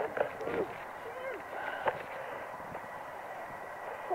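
Rugby players and touchline spectators shouting at a distance across an open pitch: scattered short calls, most of them in the first half-second and again near the two-second mark, over a steady outdoor hiss.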